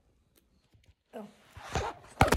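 A woman's short "Oh," followed near the end by a brief rustling swish of handling and movement; the first second is nearly quiet, with a few faint clicks.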